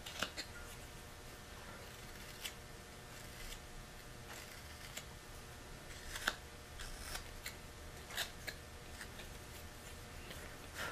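Carving knife made from a modified Mora blade slicing shavings from basswood: short, scratchy cuts at an irregular pace, about ten of them, the sharpest about six seconds in.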